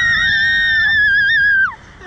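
A young woman screaming on a slingshot amusement ride: one long, high scream held steady, which slides down and breaks off near the end.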